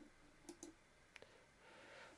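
Near silence with a few faint, short computer mouse clicks.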